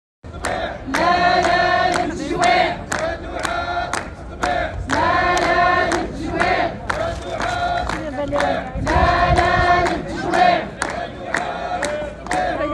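A crowd, mostly women's voices, chanting slogans in unison in repeated, drawn-out phrases, over a sharp, regular beat.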